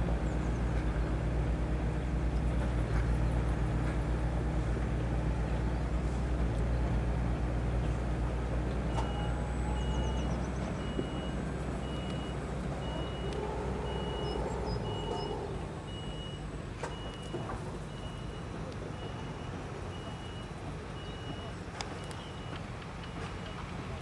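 A heavy vehicle's engine running with a steady low drone that drops away about two-thirds of the way through. From about nine seconds in, a reversing alarm beeps at one steady pitch about once a second.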